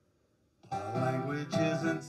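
Acoustic guitar starting suddenly about two-thirds of a second in, after a near-silent moment, and ringing out chords with a fresh stroke near the end.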